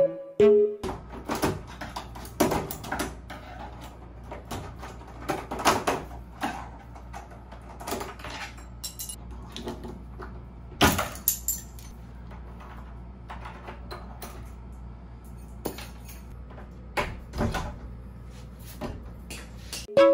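Metal hand tool clicking, knocking and scraping on a doorknob lock as it is worked to open a locked bathroom door from outside; sharp irregular clicks over a low steady hum.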